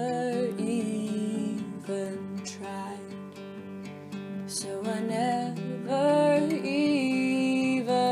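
Music: an acoustic guitar strumming, with a singing voice over it that comes in more strongly in the second half.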